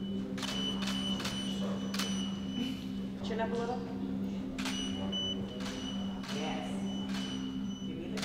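Camera shutter clicking in two quick runs as studio strobes fire, with a thin high steady tone that sets in with the shots and holds between them, over a steady low hum.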